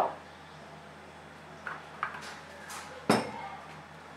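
Kitchen containers handled on a worktop: a few faint clicks, then one sharp knock about three seconds in as a plastic oil jug is set down.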